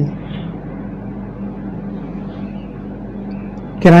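A steady low hum with a faint hiss behind it, in a pause between spoken phrases; a man's voice comes back right at the end.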